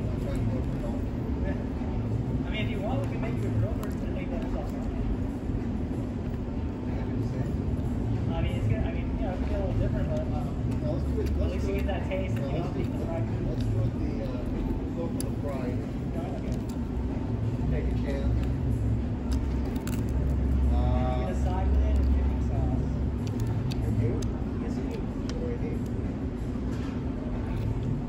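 Outdoor ambience: a steady low rumble and hum, with indistinct voices talking in the background.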